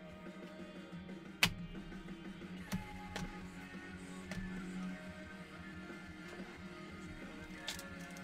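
Background music playing quietly, with a few sharp clicks over it: a loud one about a second and a half in, others near three seconds and near the end.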